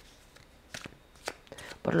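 Tarot cards being handled: a few light clicks and soft rustles during a pause in the talk, with a voice starting near the end.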